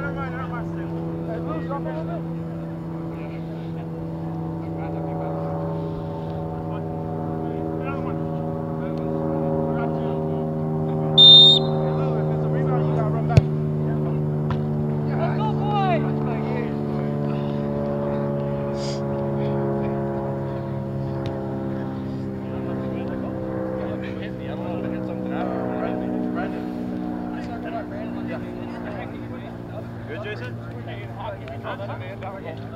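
A steady engine-like drone runs throughout, its pitch drifting slowly down. About eleven seconds in, a referee's whistle gives one short, shrill blast. Faint distant shouts come and go.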